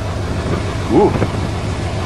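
A car engine idling steadily in the cold, a low, even rumble, with a man's short "ooh" about a second in.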